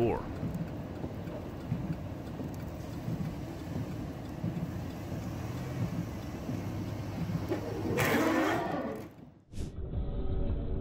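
Low, steady vehicle and road rumble heard from inside a car, with a louder rushing noise about eight seconds in, then a brief drop-out.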